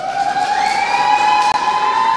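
Public-address microphone feedback: a sustained howl that rises in pitch over about the first second, then holds steady before dropping away near the end.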